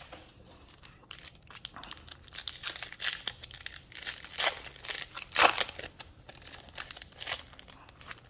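Foil wrapper of a Topps Chrome trading card pack crinkling and tearing as it is opened by hand, in irregular crackles, the loudest about five and a half seconds in.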